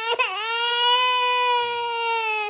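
A long, high-pitched wailing cry held on one note, rising slightly and then sinking a little, in mock distress.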